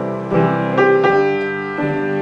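Piano playing an instrumental passage of a slow waltz between sung verses, with unhurried notes and chords struck a few times and left to ring.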